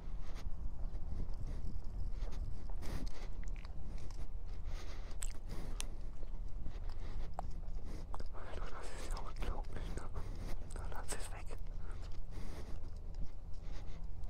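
Honda CB125R's single-cylinder engine running at low road speed, a steady low hum heard muffled through a cheap lavalier microphone, with scattered clicks and crackle from the mic.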